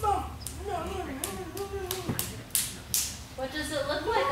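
A child's voice speaking stage lines, indistinct, with a series of sharp taps and short brushing sounds from about half a second to three seconds in.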